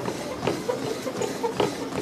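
Footfalls on a running treadmill belt, about two thuds a second.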